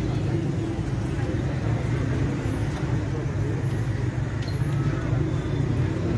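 Street ambience: a steady low rumble of road traffic with indistinct voices from a gathered crowd.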